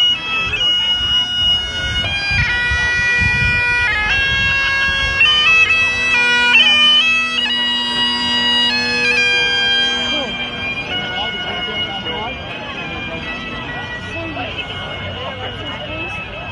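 Bagpipes playing a tune over their steady drone; the tune fades out about two-thirds of the way in, leaving crowd chatter.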